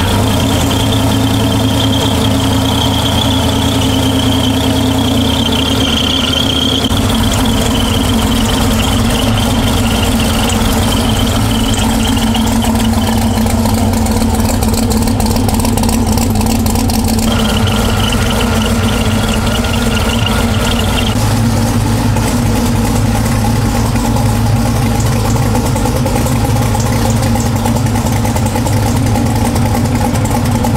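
Supercharged 427 ci LS V8 idling steadily, with a steady high-pitched whine over the low exhaust note. The low end of the idle fills out about seven seconds in, and the whine shifts pitch a couple of times.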